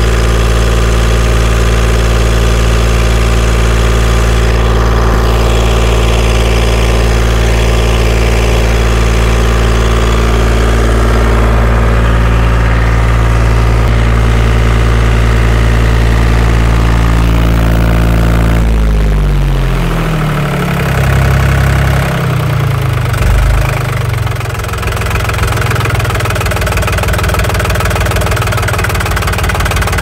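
Yanmar 4T90 diesel engine running steadily at a fast idle. About 19 seconds in it slows down with a falling pitch and settles into a lower, slower idle.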